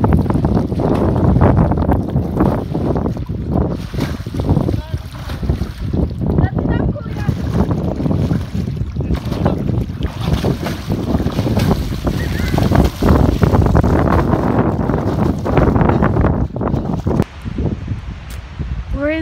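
Wind noise on the microphone, with splashing from a swimmer kicking through lake water.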